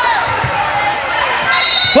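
A volleyball being served and then passed: a dull hit about half a second in, and a louder smack of the forearm pass near the end, over the chatter of voices in a large echoing sports hall.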